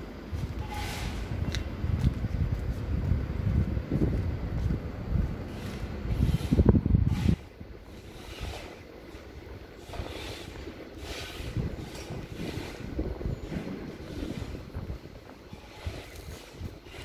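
Wind buffeting the microphone, a heavy low rumble that cuts off suddenly about seven seconds in. After that the street is quieter, with faint walking steps about once a second.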